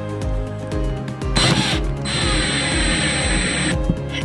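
Cordless drill-driver driving a screw through a swivel caster's mounting plate: a short burst about a second in, then a longer whining run of nearly two seconds that stops shortly before the end. Background music with a steady beat plays throughout.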